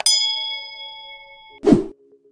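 Notification-bell sound effect: a mouse click, then a bell ding that rings for about a second and a half and cuts off suddenly, followed by a short whoosh near the end.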